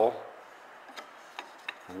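Three faint clicks of thin wooden strips being handled, in the quiet of a workshop, between a man's spoken sentences.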